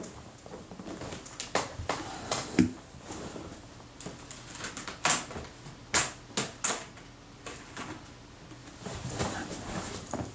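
Scattered clicks and knocks of small containers and tools being handled on a workbench during a search for lubricant, among them a plastic tub of Helimax XP helicoid grease being set down.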